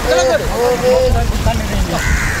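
Voices talking and calling over one another, with wind rumbling on the microphone.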